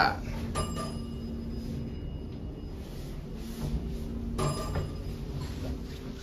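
Hydraulic elevator car's interior: a steady low hum, with a click about half a second in followed by a thin ringing tone that fades over about two seconds, and a second shorter click with a brief ring a little after four seconds.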